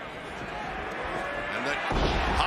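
Arena crowd noise, then just before the end a single heavy thud as a wrestler is thrown overhead and slams onto the wrestling ring mat.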